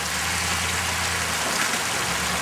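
Dodge Ram pickup's engine running at low revs while crawling over creek rocks, its low note easing back about a second and a half in, with a steady hiss of running creek water.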